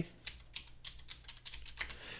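Computer keyboard typing: a quick, even run of soft keystroke clicks, about four or five a second.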